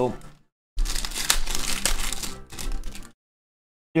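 Crinkling and rustling of a foil trading-card pack wrapper and the cards being handled, about two seconds of scratchy noise with small clicks starting just under a second in.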